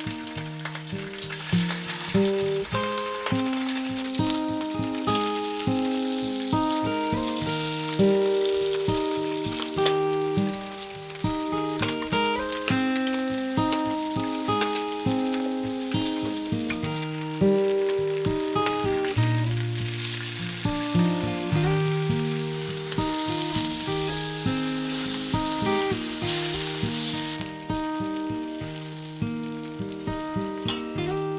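Salmon fillets sizzling in a black iron frying pan over a gas flame, with background music of held melodic notes throughout.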